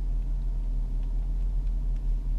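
Steady low rumble of a car heard from inside its cabin.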